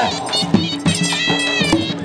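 Live Punjabi folk music for a horse dance: a shehnai playing high, held reedy notes over drumming.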